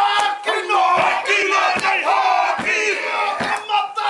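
Māori haka: a group of men shouting the chant in unison, with a sharp beat of body slaps a little more than once a second.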